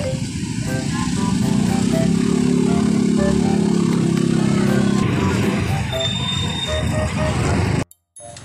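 Background music of short plucked notes over street traffic, with a motor vehicle engine passing close by, loud from about a second and a half in and fading by about five seconds. The sound cuts off abruptly near the end.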